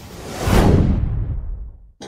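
Logo-intro whoosh sound effect: a swish with a low rumble under it that swells to a peak about half a second in, then fades away as its high end falls off.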